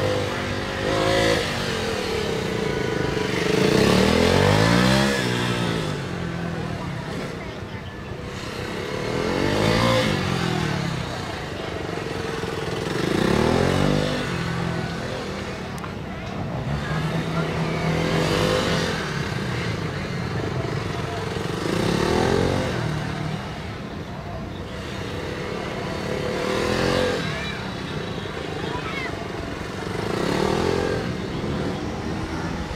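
KTM Duke 390's single-cylinder engine revving up and dropping back again and again, a rise and fall every three to five seconds, as the bike accelerates hard out of tight turns and slows into the next.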